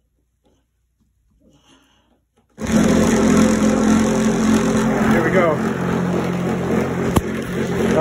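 Near silence, then about two and a half seconds in a DIY pool ball polisher switches on suddenly and runs steadily: a motor hum with a loud whirring noise as it spins and oscillates the pool balls in a padded bucket. A single sharp click comes near the end.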